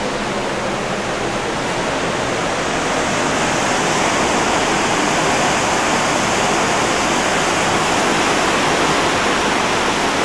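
Steady rushing noise of a cruise ship's churning wake seen from the stern, growing a little louder about three seconds in.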